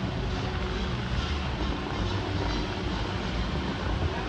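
Bellagio fountain water jets shooting and spraying: a steady rush of falling water with brief surges, and show music playing underneath.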